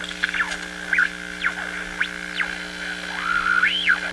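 A high, sustained warbling tone that keeps swooping sharply down in pitch and back, with a slower rise and fall near the end, over a steady low hum.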